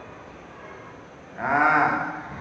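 Quiet room tone, then about one and a half seconds in, a man's voice sounds one loud drawn-out vowel whose pitch rises and falls.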